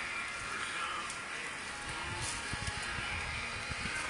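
Steady outdoor background hiss picked up by a handheld phone, with low rumbles in the second half.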